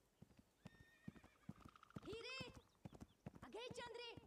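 Faint clip-clop of horse hooves, with a horse whinnying twice, about halfway through and near the end.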